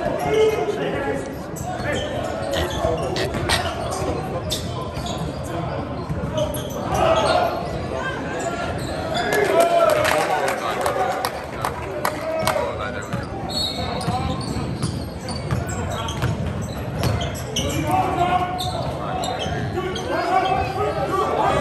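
Basketball bouncing on a hardwood gym floor in play, many short knocks throughout, with voices of players and spectators echoing in the large gym.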